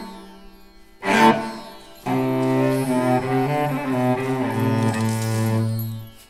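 A five-string sympathetic drone cello being bowed, its sympathetic strings vibrating along with the main strings. Two short notes ring and die away, near the start and about a second in. From about two seconds a sustained bowed phrase changes pitch and ends on a long held low note.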